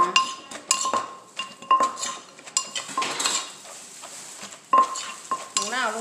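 Wooden pestle knocking into a clay mortar while papaya salad is pounded and turned with a metal spoon. Each knock clinks with a short ring, about once a second, then goes quieter midway before one more sharp knock near the end.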